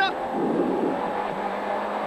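Rally car engine heard from inside the cockpit, running at steady revs under way on the stage, its note edging up after about a second. A brief low rumble comes about half a second in, over the road noise.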